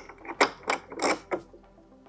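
Light metallic clicks, about four in a second, as a steel bolt is worked through the aligned holes of a mobility scooter's seat post and its mounting tube.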